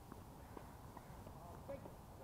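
Faint outdoor ambience with distant voices and a few soft, sharp knocks.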